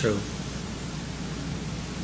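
Steady low hum and even hiss of the room and the recording, with the tail of a man's spoken word right at the start.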